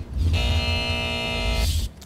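Electronic transition sting of a TV broadcast: a steady held synthesized tone of constant pitch, lasting about a second and a half over a deep bass rumble, that cuts off just before the talking resumes.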